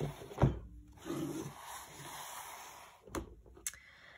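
Watercolour brush and palette being handled: a knock about half a second in, a couple of seconds of soft scrubbing or rustling, then two sharp clicks near the end.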